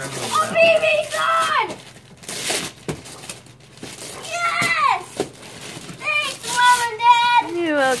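Gift wrapping paper tearing and crinkling as a present is unwrapped, with a young child's high-pitched voice making wordless sounds three times.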